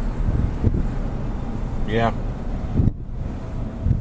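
A car driving slowly, heard from inside the cabin: a steady low engine and road rumble, with some wind noise on the microphone. A man says "yeah" about two seconds in.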